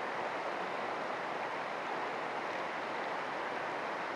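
Fast-flowing floodwater rushing steadily, an even, unbroken hiss.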